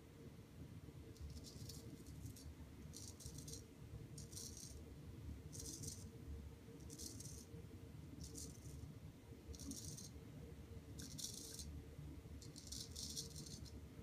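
Straight razor scraping stubble through shaving lather in short strokes, about nine quiet scrapes roughly one every second and a half.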